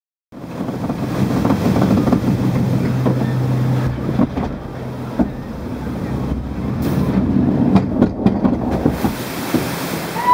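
Log-flume boat riding up and over the lift with a mechanical rumble, a low steady hum and irregular clicks and knocks. Rushing water builds near the end as the boat runs down the drop into the splash pool.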